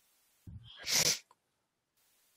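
A person sneezing once: a short low intake about half a second in, then a sharp hissing burst about a second in.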